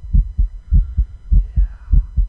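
Deep, loud thumps coming in pairs like a heartbeat, about one pair every 0.6 seconds, with no splashing or rubbing sound from the hands.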